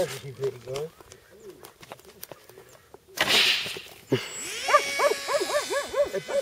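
A model plane launched off a simple ramp: a rushing whoosh about three seconds in, then a quick run of rising-and-falling high cries.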